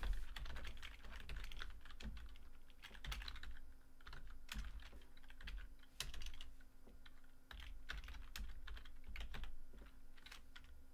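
Typing on a computer keyboard: quick runs of key clicks in bursts with short pauses between them.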